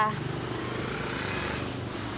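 Steady low hum of a motor vehicle engine running nearby, with a hiss of noise swelling in the middle.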